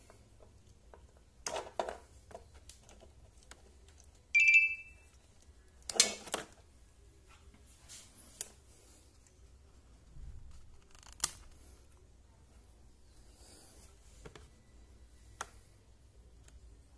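Plastic clicks and knocks of hands pulling apart an XT60 battery connector and handling test gear on a scooter battery pack. A short electronic beep sounds about four seconds in, and the loudest clatter follows about two seconds later.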